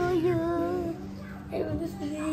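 A child's singing voice holding one wavering, drawn-out note for about a second, then a short second vocal sound near the end, over a steady low background tone.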